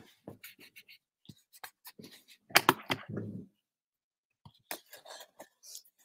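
Red cardstock handled on a craft desk: scattered light rustles, taps and scrapes of paper, with a louder scraping cluster about two and a half seconds in and a brief pause after it.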